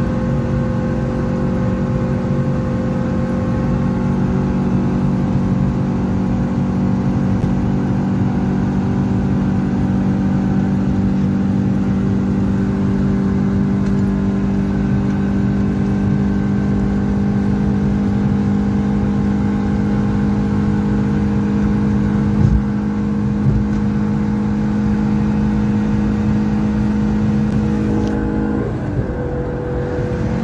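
Fiat Uno Fire 1.0 8v naturally aspirated four-cylinder engine, heard from inside the cabin, held at about 6,000 rpm at highway speed with a steady high drone. The engine dips briefly in pitch and level near the end, then picks back up.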